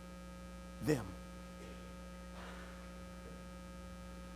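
Steady electrical mains hum, with a single short spoken word about a second in.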